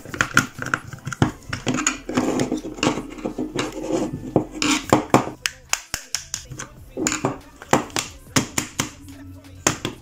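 Hard plastic clicks, taps and rattles of a hot glue gun's casing being handled and pried apart with a screwdriver on a wooden tabletop. There is a brief break about six seconds in.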